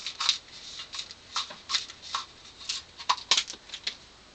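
About a dozen light, sharp clicks and taps at irregular spacing: a shot-through aerosol deodorant can and its shattered plastic lid being handled.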